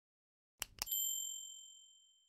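Two quick mouse-click sounds, then a bright bell ding that rings out and fades slowly: the click-and-notification-bell sound effect of an animated subscribe button.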